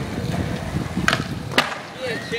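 Skateboard wheels rolling over concrete with a steady low rumble, broken by two sharp board clacks about a second and a second and a half in. The rumble drops away after the second clack.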